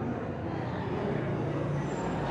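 Low, steady room noise with a faint low murmur and no distinct events.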